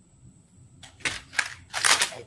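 A few short soft clicks about a second in, then a quick breathy rush near the end as speech is about to resume.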